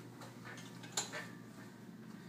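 Faint clicks and taps from a man climbing onto a reverse hyper machine and gripping its metal handles, with one sharper click about a second in.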